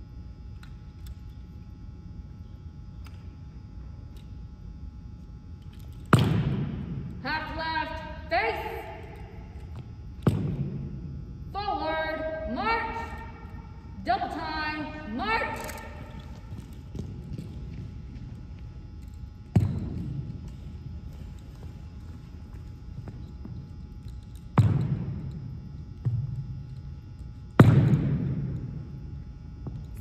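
Armed drill on a hardwood gym floor: about six sharp knocks of the drill rifle and boots on the floor, each ringing out in the large hall. Between the first few, a voice calls drawn-out shouted drill commands.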